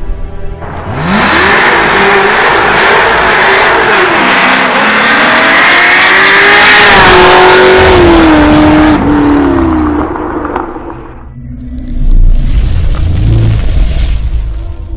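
High-powered car engine revving up and accelerating hard. Its pitch climbs from about a second in, holds high, then falls away, under music. A deep boom comes near the end.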